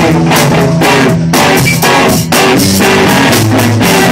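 Live rock band playing an instrumental passage with no singing: electric guitar and electric bass over a drum kit keeping a steady beat, loud throughout.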